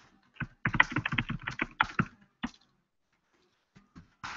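Typing on a computer keyboard: a quick run of keystrokes lasting about two seconds, followed by a couple of separate key presses near the end.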